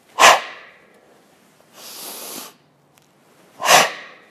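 A man's forceful, sharp exhalations timed to the movements of a chishi exercise: two short, loud breaths, one just after the start and one near the end, with a softer hissing breath in between.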